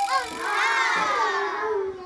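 A long, excited vocal cry that slowly falls in pitch over about two seconds.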